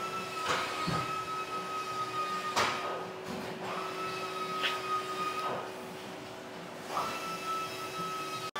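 Machine noise: a steady low hum under a higher whine that starts and stops three times, with a few light knocks.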